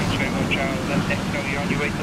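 Wind buffeting the microphone over choppy water, with a steady low rumble and indistinct voices of people talking nearby.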